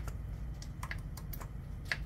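About five light, scattered metallic clicks as a hand rocks a rocker arm on the open valve train of a Caterpillar 3208 diesel, feeling for valve lash, over a low steady hum.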